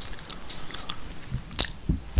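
A pause filled with small mouth clicks and lip noises close to a microphone, with one sharper click about one and a half seconds in.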